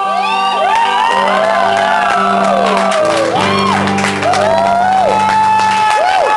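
Live band holding a sustained chord on electric guitar and bass, with the audience whooping and cheering over it.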